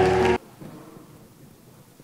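A steady, held pitched sound with a strong bass cuts off abruptly less than half a second in, leaving quiet room tone in the hall.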